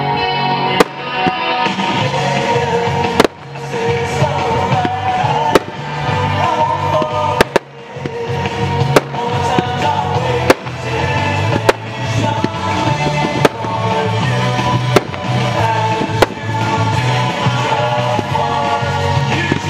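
Music playing throughout, with about ten sharp firework bangs over it, one every second or two.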